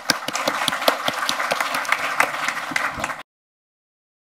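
Applause, many hands clapping, which cuts off abruptly about three seconds in.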